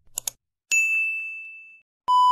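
Two quick clicks, then one bright bell ding that rings out and fades over about a second: a subscribe-button click and notification-bell sound effect.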